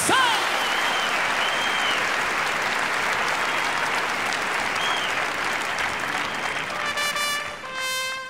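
Audience applauding, with a few cheering shouts. Near the end, mariachi trumpets come in with held notes as the next song begins.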